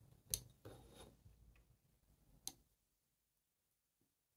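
Near silence, with two faint sharp clicks about two seconds apart and soft rubbing between them: a paintbrush mixing black watercolour paint in a ceramic palette well, tapping against the ceramic.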